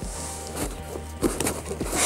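Background music, with cardboard rubbing and sliding in short stretches as a card sleeve is pulled out of a cardboard box.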